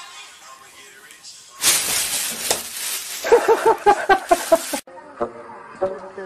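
A plastic bag rustling and crinkling as a cat pushes into it, joined after a second or so by a burst of rapid human laughter. It cuts off suddenly near the end.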